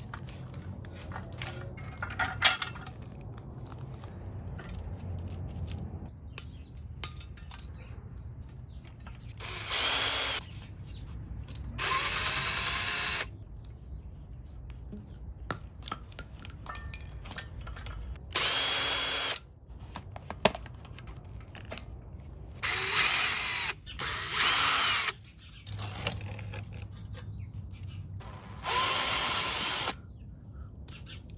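Cordless drill/driver running in six short bursts of about a second each, spinning screws out while parts are stripped off an electric pit bike. Small clicks and rattles of parts being handled come between the bursts.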